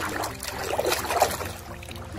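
Water splashing and dripping as a hand dunks a plastic toy octopus into shallow lake water and lifts it back out, a run of short irregular splashes.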